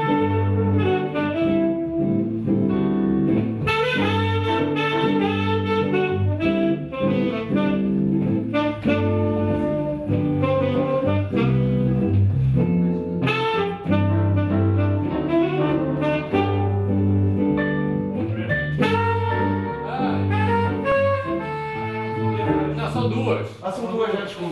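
Small jazz group playing a tune, a tenor saxophone carrying the melody over a walking low bass line.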